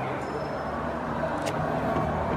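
Outdoor ambience: a steady low hum with faint distant voices, and a sharp click about one and a half seconds in.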